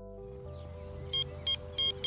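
Electronic bite alarm bleeping on a carp-style rod pod: three short high-pitched bleeps beginning about a second in, coming faster, the third held longer. These are the signal of a fish picking up the bait and pulling line from the rod, a tench taking the method feeder.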